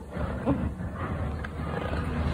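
Thick scrapbook pages of a spiral-bound album handled and turned, with a few light paper clicks over a low rumble.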